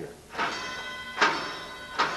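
Old wall-mounted school fire alarm bell, manually operated, ringing: two strikes about a second apart, the second the louder, each gong ringing on and fading, with a third strike just at the end. It still works.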